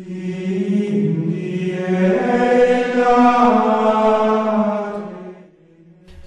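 Voices chanting long held notes, with the pitch stepping up about two seconds in, then fading away shortly before the end.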